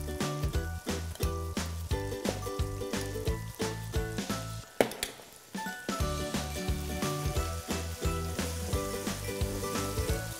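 Chicken and mushrooms frying in an enamelled cast-iron pot, sizzling and crackling as spoonfuls of salmorreta sauce go into the hot oil and are stirred in, with a single sharp knock of a spoon against the pot about halfway through. Background music plays underneath.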